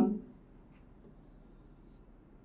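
Marker pen writing digits on a whiteboard: faint, high-pitched scratchy strokes from about half a second in, after the end of a spoken word.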